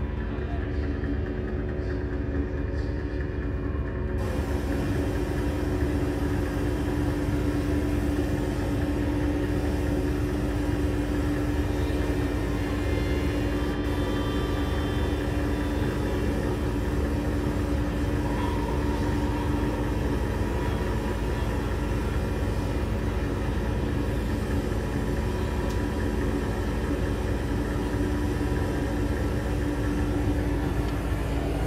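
Live drone music played on electronics: a continuous low rumble under a steady held tone, with a layer of hiss coming in about four seconds in and staying.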